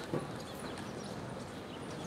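Outdoor ambience of a paved pedestrian plaza: a steady, even background noise with a brief knock just after the start.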